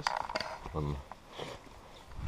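Rustling and handling noise of a hand-held camera being swung round, a burst of clicks and scrapes in the first half second, with a short voice sound just under a second in.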